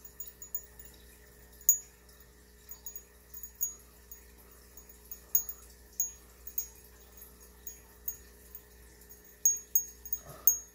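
Short, high-pitched tinkling pings at irregular intervals, one to a few a second and some much louder than others, over a faint steady hum.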